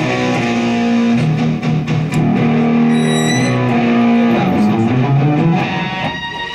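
Electric guitar played through a homemade breadboard effects processor with its compressor stage engaged, giving a meatier sound. It plays a short melodic line of single notes, each held for a second or two.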